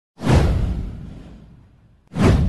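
A whoosh sound effect with a deep low rumble underneath. It starts suddenly about a fifth of a second in and fades away over about a second and a half.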